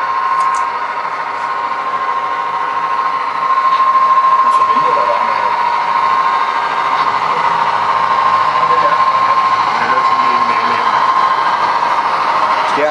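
HO scale model passenger train, Santa Fe warbonnet F-unit diesels pulling streamlined cars, running past on the track: a steady whir of motors and wheels with a steady high whine. It gets louder about three and a half seconds in as the train draws alongside, then holds level.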